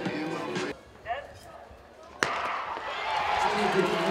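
Background music and talk cut to a hush, then a single sharp crack of a starting pistol about two seconds in, with the crowd noise swelling after it.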